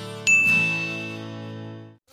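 Intro music holding a sustained chord that fades out near the end, with a single bright bell ding about a quarter second in that rings and dies away over about a second: a subscribe-button notification sound effect.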